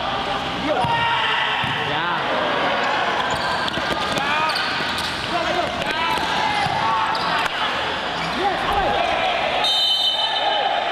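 Futsal game sounds on an indoor court: players' shoes squeaking on the court surface and the ball being kicked, over the voices and shouts of players and crowd.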